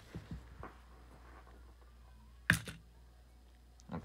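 A few faint small clicks, then one sharp plastic snap about two and a half seconds in: a spring-loaded Bakugan Battle Planet toy ball, Darkus Fangzor, popping open as it is rolled onto the gate cards.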